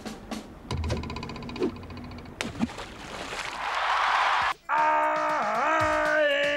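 TV comedy soundtrack of sound effects and music. First comes a fast rattling effect with a low rumble, then a swelling rush of noise. After a brief break near the end, a bright tune of held, bending notes starts.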